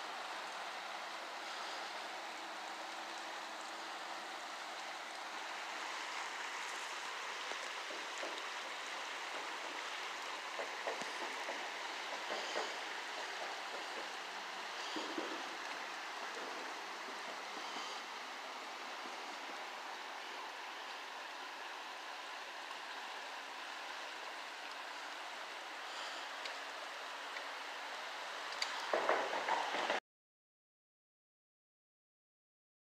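River water running over shallow riffles past bridge piers and fallen logs: a steady rushing noise. A few faint clicks come in the middle, and a brief louder noise comes near the end.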